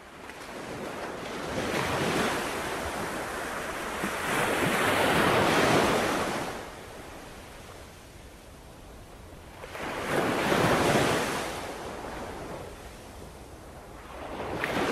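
Surf: waves washing in and drawing back, heard as a rushing noise that swells and fades in slow surges, loudest about five and eleven seconds in.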